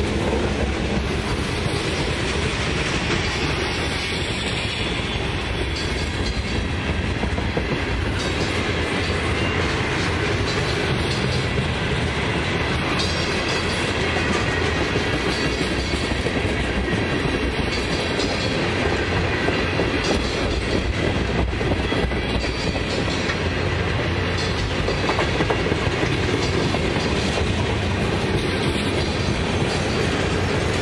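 Cars of a mixed freight train rolling past at speed: a steady clatter of steel wheels on the rails, with the clickety-clack of wheels crossing rail joints.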